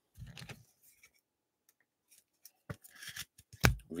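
Trading cards sliding and rubbing against one another as they are flipped through by hand, in short scraping bursts with a few sharp clicks in the last second or so.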